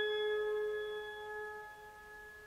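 A final held chord on a pipe organ fading away, several steady notes dying out together.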